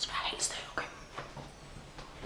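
A woman whispering.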